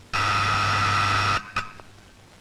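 Electric doorbell buzzer pressed twice: one loud buzz of a little over a second, then a short second buzz.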